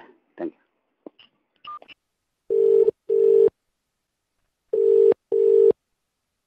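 Telephone ringback tone heard over a phone line: two double rings, each a pair of short steady buzzing tones, while an outgoing call rings and waits to be answered.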